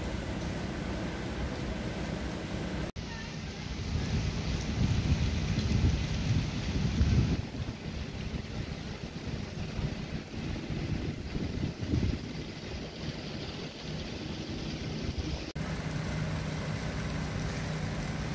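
Outdoor background noise: a steady hiss with wind buffeting the microphone in low rumbling gusts, heaviest from about 4 to 7 seconds in. The sound breaks off abruptly about 3 seconds in and again near the end.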